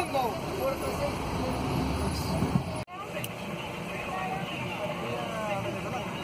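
Low, steady car and traffic rumble heard from inside a car, with faint voices in the background. The sound drops out sharply for an instant about three seconds in, at an edit cut.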